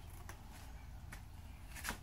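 Faint rustling and a few small clicks, the clearest just before the end, over a low steady rumble of room tone.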